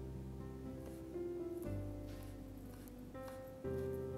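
Background music: soft sustained chords that change about every two seconds.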